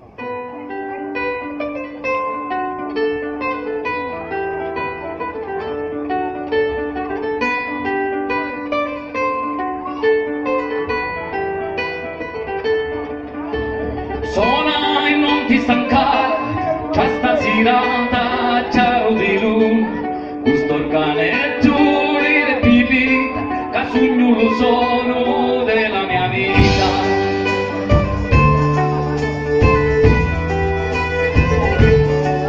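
Live folk-band performance opening with a guitar intro picked note by note. About fourteen seconds in, more instruments join with sharp rhythmic strokes and the music gets louder, with a deep bass coming in near the end.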